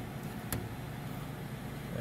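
A single sharp click about half a second in as needle-nose pliers squeeze a plastic standoff clip on a heater control board, over a steady low background hum.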